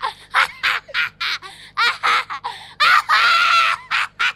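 A girl's high-pitched laughter in quick repeated bursts, rising into one long, loud shriek of laughter about three seconds in.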